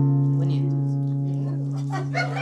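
A guitar string plucked once, its single low note ringing on and slowly fading, the upper overtones dying away first: a starting note given for a singer to pitch her song.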